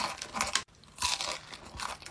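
Close-miked crunching and chewing of a chocolate-coated ice cream treat, its hard chocolate shell cracking between the teeth in two spells of crunching.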